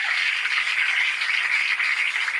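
A large theatre audience applauding: a steady, dense clatter of clapping, heard through the played comedy clip.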